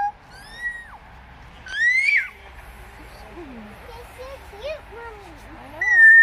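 Three high-pitched, whistle-like squeals, each rising then falling in pitch: one about half a second in, a louder one about two seconds in, and one at the very end. Lower, wavering voice-like sounds come in between.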